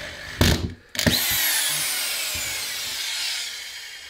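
Cordless drill-driver driving a screw through plasterboard into a wooden batten behind it: a short burst about half a second in, then a run of about three seconds from one second in, its motor whine falling steadily in pitch before it stops near the end.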